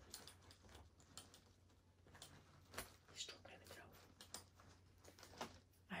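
Near silence, with a few faint clicks and taps of a bag's metal strap clip being worked loose by hand.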